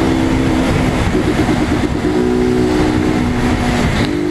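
Motorcycle engine running under way, its note holding steady and then shifting up or down in steps, over a steady rushing noise of wind and road.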